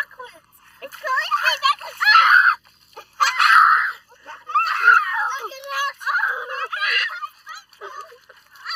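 Young children squealing and shrieking, high-pitched voices coming in repeated bursts.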